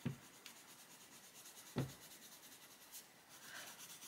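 Coloured pencil shading on colouring-book paper, a faint steady scratching, with two brief soft knocks: one at the start and one nearly two seconds in.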